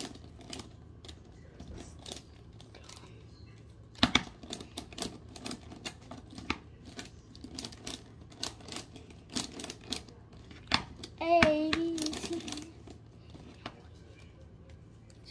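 Plastic Pyraminx Diamond twisty puzzle being turned quickly in the hands: a dense, irregular run of clicks and clacks, the sharpest one about four seconds in. A child's short hum comes in near the end.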